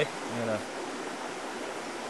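A creek roaring with a steady, even rush of running water.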